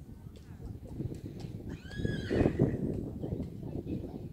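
A horse whinnying once, about two seconds in, a call of under a second that arches and falls in pitch.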